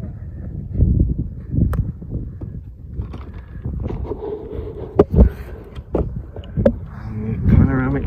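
Wind buffeting a phone microphone in uneven gusts, with a few sharp knocks about five seconds in and a voice starting near the end.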